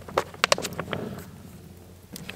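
A fire in a metal fire pit being fanned with a stiff cardboard calendar to feed it air. There are several sharp crackles and flaps in the first second or so, then it quietens.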